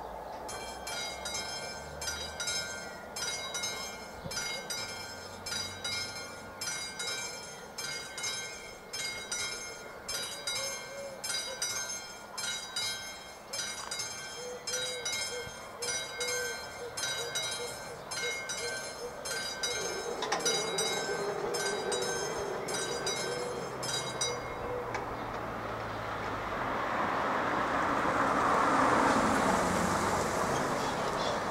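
A level-crossing warning bell (the classic mechanical bell of AŽD 71 crossing signals) ringing in a steady run of repeated strikes. It warns that a train is coming while the barriers lower, and it stops about 24 seconds in. Near the end a car drives past close by, rising and then falling.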